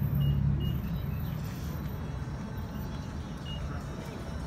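Steady low rumble of road traffic and nearby vehicles on a phone's microphone, with a low hum in the first second and a few faint, short, high beeps.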